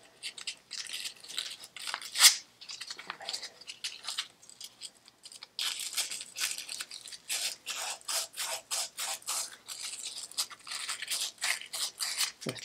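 Rapid scrubbing and rubbing strokes inside the fork-leg hole of a Harley-Davidson Electra Glide's fork yoke, cleaning it out before the fork goes back in. There is a louder stroke about two seconds in and a short pause near the middle, then quicker, steadier rubbing to the end.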